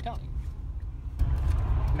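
Car engine and road rumble heard inside the cabin. About a second in, a steady rush of air comes on, the windshield defroster fan switched on to clear the fogged glass.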